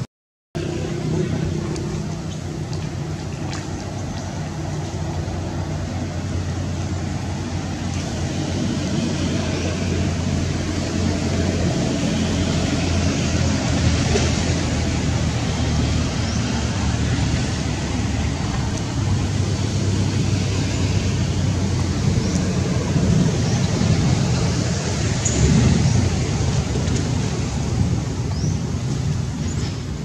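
Steady outdoor background noise with a continuous low hum underneath, cut off to silence for a moment right at the start; a few faint high chirps come through now and then.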